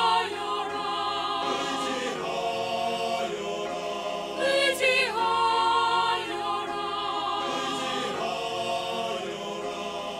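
Mixed church choir singing the anthem line "의지하여라" ("trust") with Young Chang grand piano accompaniment, the voices swelling to their loudest about halfway through.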